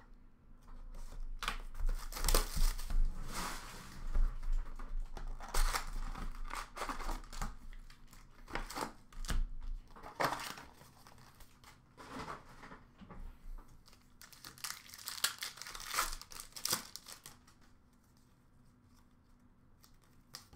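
Upper Deck hockey card box being opened by hand: plastic wrap and foil packs crinkling and cardboard tearing, in irregular rustling bursts that thin out near the end.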